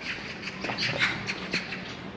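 Footsteps on stone paving, a few steps a second, with short high-pitched sounds scattered over them.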